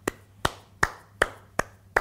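One man clapping his hands slowly and evenly, about two and a half claps a second.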